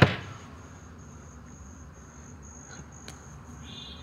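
Crickets chirping: a faint, high, evenly repeating chirp over a quiet night ambience.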